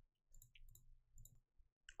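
Near silence with a few faint, scattered computer mouse clicks.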